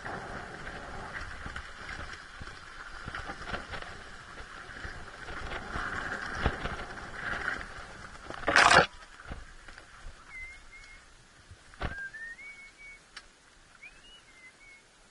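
A dirt bike rolls down a rough trail with a steady rustling, clicking noise from tyres, stones and brush. About eight and a half seconds in comes a loud, brief scrape. After it the noise drops away, and a bird calls in several short rising chirps.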